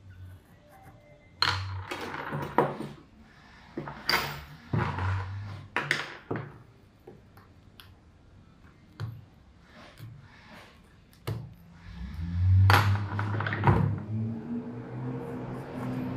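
Pencil marking along a paper shoe pattern on a hard table, with scattered light taps and clicks of the pencil and paper. A louder low rumble comes in near the end.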